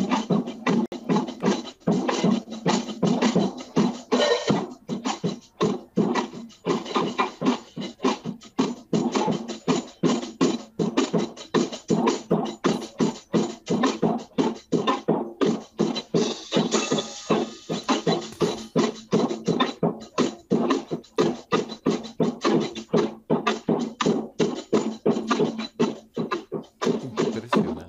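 A child playing an acoustic drum kit: a continuous run of snare, tom and cymbal strokes, several a second, with no pause. The sound is heard over a live remote link, with the top end cut off.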